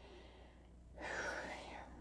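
A woman's soft breath in through the mouth, about a second in and lasting about a second, taken just before she speaks again, over a faint steady low hum.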